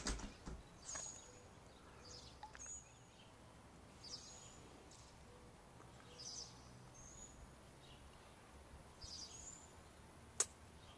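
A bird repeating a short, high, faint chirp about every one and a half to two seconds, over quiet outdoor background noise. A brief low bump comes at the very start.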